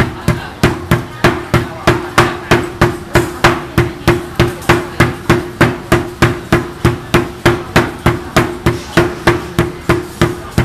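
Two heavy mallets taking turns pounding a slab of khanom tub tab (Thai peanut brittle) on a wooden block: a steady run of sharp thuds, about three a second.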